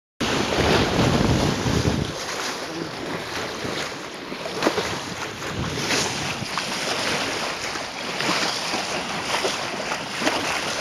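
Sea water rushing and splashing past the bow of a Stewart 34 sailing yacht under way, with wind buffeting the microphone, heaviest in the first two seconds.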